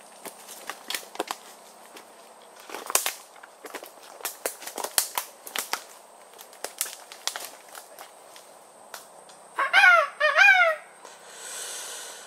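Dry sticks and dead branches snapping and crackling underfoot as someone runs and scrambles through brush, in irregular sharp cracks. Two short wordless shouts rise and fall near the end.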